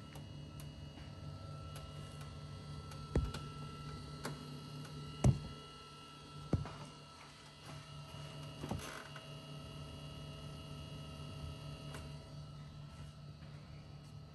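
A steady low hum with a faint steady whine above it, broken by four sharp knocks or clicks, the loudest about five seconds in.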